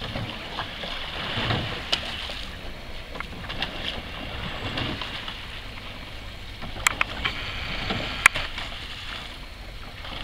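Rowing boat's oar blades and hull moving through calm water, with the wash swelling softly about every three seconds with the strokes. Sharp clicks of the oars turning in their gates come twice near the end, over a steady low rumble.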